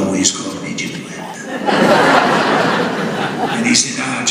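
Audience laughter in a hall. It is scattered at first, swells into a full wave of laughing about two seconds in, and dies away near the end.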